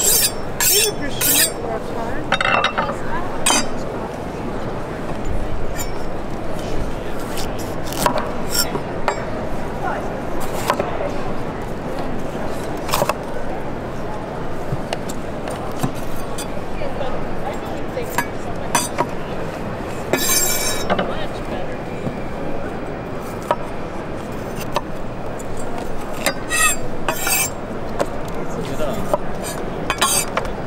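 Chef's knife drawn along a steel honing rod, a few quick ringing metallic strokes in the first second or so, then scattered knife taps and slices on a wooden cutting board as a red bell pepper is cut, with short bursts of clicks twice later on. Steady murmur of crowd chatter underneath.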